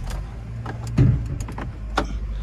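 Holden Astra's engine starting: a loud burst about a second in as it catches, then a steady idle, with a few light clicks over it.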